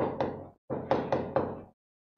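Chalk tapping and scraping on a blackboard as a word is written by hand: a short run of quick knocks, two at the start and four more from just under a second in.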